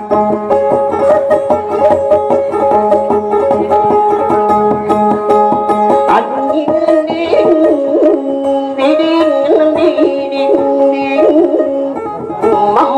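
Kutiyapi, the Maranao two-string boat lute, playing fast plucked runs over a repeated held note. The figure changes pitch about halfway through.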